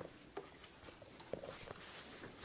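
A few faint clicks and taps, the handling noise of a small clip-on microphone being fitted at a laptop lectern, over quiet room tone.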